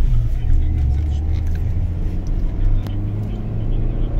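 Suzuki Swift 1.3 petrol four-cylinder engine running under way, heard from inside the cabin as a steady low drone together with road rumble.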